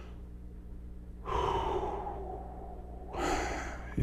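A man sighing heavily: a long breath out about a second in, then a second, shorter breath near the end, over a faint steady low hum.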